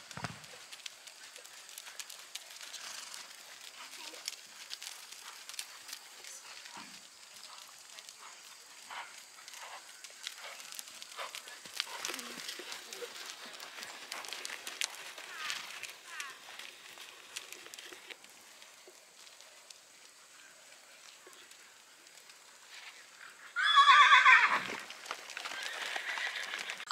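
Faint, soft hoofbeats of horses trotting on an arena's sand footing. Near the end a horse gives one loud whinny that falls in pitch.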